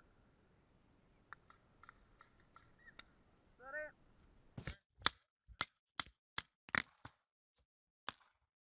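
Paintball markers firing a string of about seven sharp shots, two to three a second, in the second half. Just before them comes a short pitched call that rises and falls.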